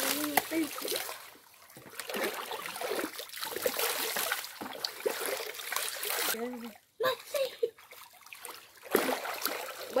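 Water poured from a plastic bowl over a person's head, splashing down onto her body and into the shallow creek water, in several pours with short pauses between them.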